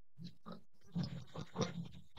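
A woman's quiet, stifled laughter: a string of short, faint breathy pulses, about eight of them, with no words.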